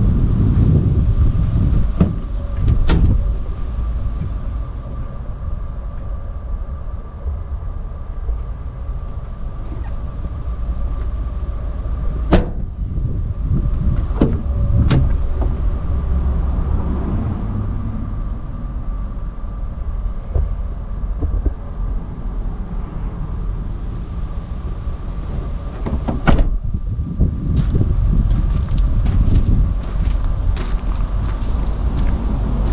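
Low wind rumble on the microphone, broken by a few sharp clicks and knocks from the Ford Transit's cab door being opened and shut, with a faint steady tone underneath.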